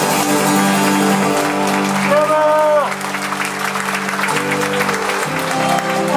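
Live Hawaiian band music with guitar, including a held note that rises and falls at about two seconds in. Audience applause runs under the music.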